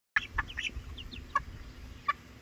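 A small flock of young hens giving short, high clucks and chirps, about half a dozen brief calls in the first second and a half.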